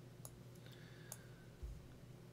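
Near silence: faint room tone with a few small, sharp clicks and one soft low thump near the end.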